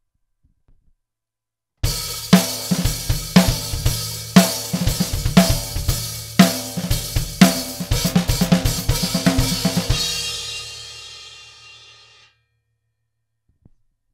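Acoustic drum kit played: a fill built around the hi-hat with snare and bass drum, starting about two seconds in, with strong accents about once a second. It stops about ten seconds in and leaves a cymbal ringing, which fades away about two seconds later.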